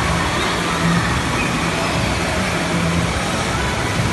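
Steady rush of flowing water in a water-park channel, with a faint low hum underneath.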